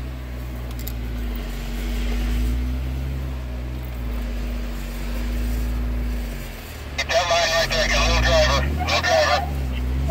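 Jeep Wrangler Sahara's engine working under load on a steep rock climb, heard from inside the cab, its pitch dipping then rising as it is given more gas. About seven seconds in, loud high wavering honk-like squeals join it for a couple of seconds.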